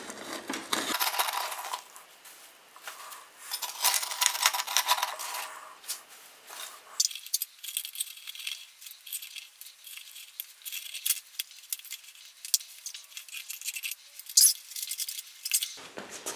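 Flat metal scraper blade scraping and chipping deteriorated lining and charcoal ash out of a steel-bucket foundry furnace, in irregular scrapes and clinks.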